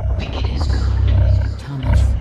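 A deep, steady rumbling roar from a film soundtrack's sound design, with a short dip just before the end.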